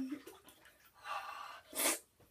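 A person breathing out heavily, then a short, sharp gasp just before the end, a reaction to having an arm in very cold bath water.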